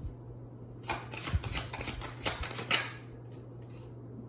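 Tarot cards being shuffled and handled: a run of quick flicks between about one and three seconds in, over a steady low hum.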